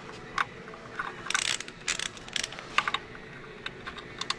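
Ratchet of a digital torque wrench clicking in several short bursts, with metal clinks, as it is worked on the main bearing cap bolts of a Cummins ISL engine block.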